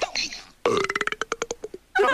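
A cartoon voice burping after eating: a short grunt, then one long rattling belch of about a second, a fast even run of pulses on a steady pitch.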